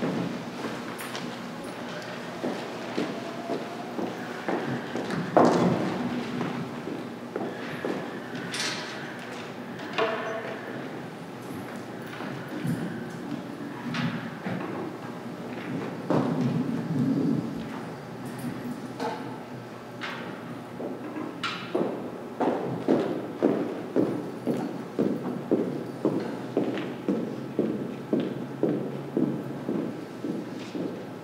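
Scattered knocks and thuds on a concert stage, with a few faint held instrument notes. Near the end comes a steady run of knocks, about two a second.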